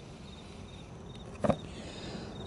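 Insects, likely crickets, chirping faintly in a high repeated pattern about twice a second, with one short knock about a second and a half in.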